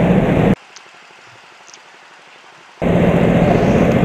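Go-kart engine running steadily. The sound cuts out abruptly about half a second in, leaving only faint hiss for about two seconds, then comes back just as suddenly.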